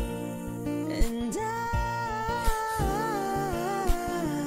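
Pop song playing: a drum beat with bass under it, and from about a second and a half in a held, wavering wordless vocal melody.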